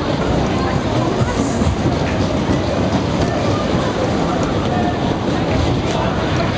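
Sobema Superbob fairground ride running at speed: the cars' wheels give a loud, steady rumble on the circular track, with riders' voices faintly over it.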